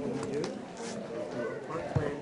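Many overlapping conversations from a crowd of people standing and talking in a large room, with a short knock near the end.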